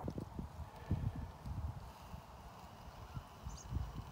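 Soft, irregular low thumps and rustling from hands working a pressure-gauge soil penetrometer as it is pushed into the ground, the strongest about a second in and near the end.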